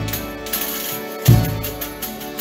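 Folia de Reis ensemble playing an instrumental passage: accordion and guitars holding steady chords, with low drum beats and bright jingling from a frame drum.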